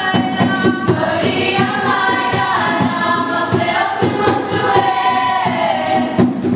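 A large group of voices singing a Māori waiata together in long, held melodic lines, over a steady low beat.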